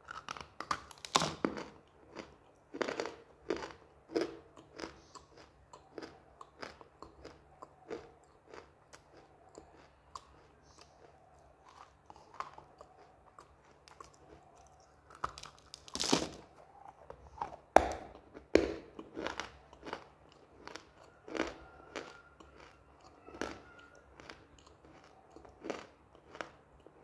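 Close-up biting and chewing of hard, dry, roasted black 'slate item' chunks: a long run of sharp crunches with grinding chews between them, the loudest bites about a second in and again around the middle.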